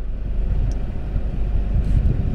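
Wind buffeting a phone's microphone: a steady, loud low rumble with an uneven flutter.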